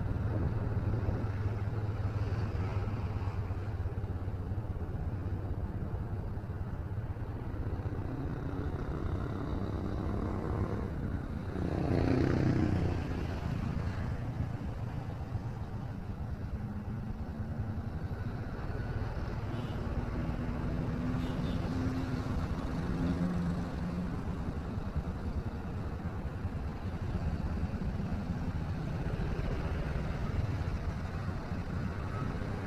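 Motorcycle engine running while riding in road traffic, with a steady low hum and road noise. About twelve seconds in, one louder surge rises and fades.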